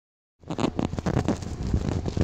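A quick, irregular series of knocks and thumps over a low hum, starting about half a second in.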